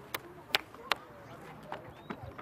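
Brisk footsteps on concrete: sharp, evenly spaced steps that fade out about a second in, with faint distant voices behind.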